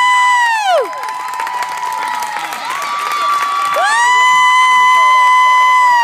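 A huddle of young children shouting a long held team cheer together, twice. The first call dies away about a second in, and the second begins a little before four seconds in and is held near the end, with mixed shouting and crowd voices between.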